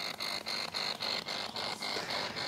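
Spirit box sweeping through radio stations: choppy bursts of static repeating about four or five times a second.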